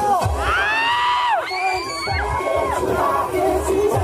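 A crowd cheering and shouting, with long loud shouts that rise and fall in pitch, while the dance music's beat drops out; the beat comes back in about halfway through.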